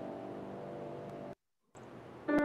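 Grand piano with a held chord ringing on and fading, cut off abruptly a little over a second in, followed by a brief silence and a faint hiss.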